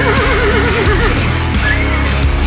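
A horse whinnying, one quavering call of about a second followed by a short call near the end, over loud rock music with a steady beat.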